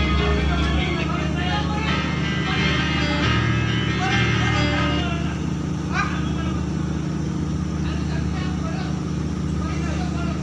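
Steady low drone of a ship's machinery running alongside the quay, with music playing over roughly the first half.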